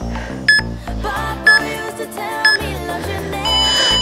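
Background music with a steady beat, over which a workout interval timer gives three short countdown beeps about a second apart, then a longer beep near the end marking the end of the work interval.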